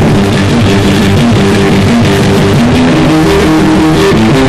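Punk rock band's demo recording in an instrumental stretch without vocals: loud, steady electric guitar and bass with the full band playing.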